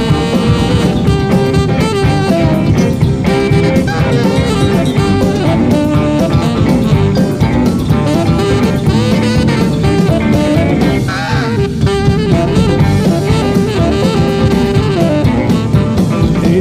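A rock and roll band playing an instrumental break between verses, with a saxophone leading over drums and backing instruments.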